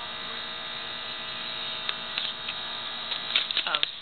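Steady electrical hum and hiss of a low-quality recording, with a few faint clicks in the second half.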